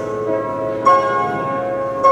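Grand piano playing a slow passage: a chord struck a little under a second in rings on over lower sustained notes.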